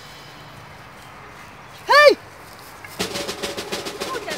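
A young woman's single short, high-pitched cry about two seconds in, rising and falling, then percussive drum music starting about a second later.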